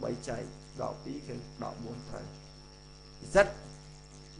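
A man lecturing in Khmer in short phrases, with one louder syllable near the end, over a steady electrical hum and a thin high-pitched whine from the recording chain.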